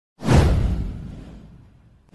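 A whoosh sound effect for an animated intro: it swells up suddenly about a quarter second in, a deep rumble under a high hiss, then fades away over about a second and a half.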